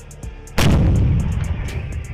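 A tank's main gun firing once, about half a second in: a sharp, very loud blast followed by a long low rumble that slowly fades.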